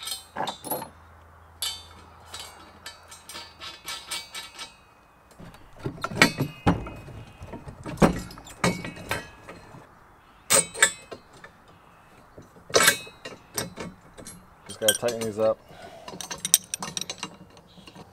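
Steel implement-lift frame pieces and loose bolts and washers clinking and knocking as they are handled and fitted together, with a run of quick light clicks about two seconds in and several heavier knocks through the middle.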